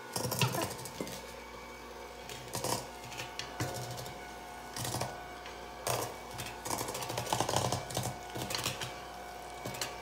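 Electric hand mixer running with a steady motor whine, its beaters knocking and rattling irregularly against a stainless steel bowl as they blend butter, sugar, pumpkin and egg into cookie batter.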